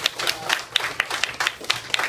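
A small group of people applauding with uneven hand claps, many separate claps a second.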